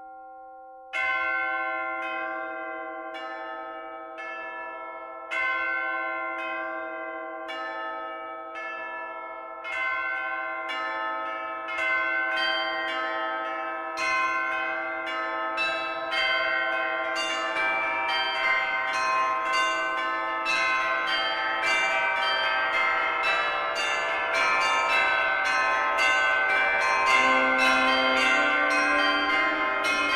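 Bells ringing: slow single struck tones about a second apart, then faster overlapping strikes building into a dense, gradually louder peal.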